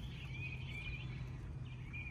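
Faint bird calls, short chirps repeating, over a low outdoor rumble.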